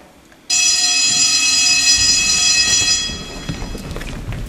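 A school bell ringing: a loud, steady ringing tone that starts suddenly about half a second in and fades after about three seconds, with shuffling footsteps on the stage beneath it in the second half.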